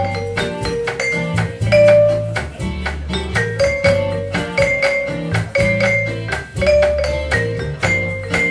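Live band music in an instrumental passage with no singing: a steady bass line under a melody of quick, distinct struck or plucked notes.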